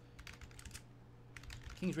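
Typing on a computer keyboard: a quick run of keystrokes, a short pause about a second in, then a few more keys as a search is typed.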